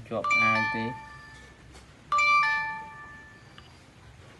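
Two-note ding-dong doorbell chime, a higher note then a lower one, ringing twice about two seconds apart, each fading away over about a second.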